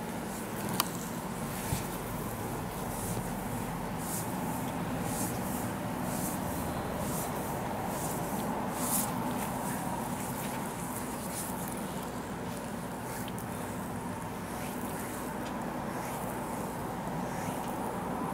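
Oiled hands gliding over and kneading bare skin of a thigh: soft slick rubbing strokes that recur irregularly, over a steady background hum, with two small clicks in the first two seconds.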